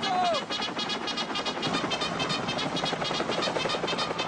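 Rapid, even chopping of UH-1 Huey helicopter rotor blades, about ten beats a second, as the helicopter lifts off.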